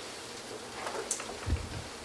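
Quiet room tone with a brief faint hiss about a second in and a soft low thump just past halfway.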